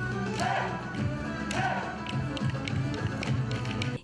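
Live Turkish folk dance music with a steady run of sharp percussive taps through it. It cuts off suddenly near the end.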